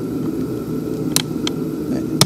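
Steady noise of a loud space heater running, with two sharp plastic clicks a little past the middle, a fraction of a second apart, as a small flat-blade screwdriver pries at the glued plastic housing of a Mercedes W126 instrument cluster to crack it loose.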